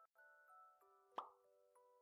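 Faint channel-intro jingle of sustained, bell-like notes, with one sharp cartoon pop sound effect a little over a second in.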